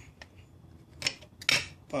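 Thin aluminum can bottom, scored around its crease with a knife, clicking and crackling as it is pushed out of the can. Two sharp clicks come about half a second apart, about a second in.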